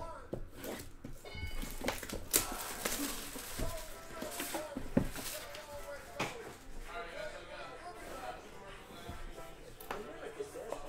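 Plastic shrink wrap being slit and pulled off a boxed trading-card hobby box, crinkling, with a few sharp knocks as the cardboard box is handled and set down.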